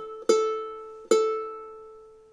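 A high-G ukulele's A string plucked twice, about a second apart, each note ringing and fading away. The string is below pitch during tuning: the tuner reads it as a sharp G rather than an A.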